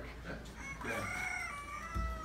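A long animal call, held about a second and a half and falling slightly in pitch.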